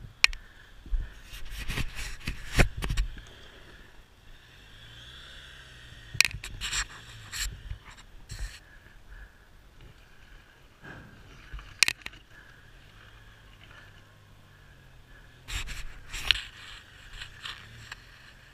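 Footsteps crunching and scraping on a rocky dirt trail, coming in several bursts of uneven steps with quieter gaps between.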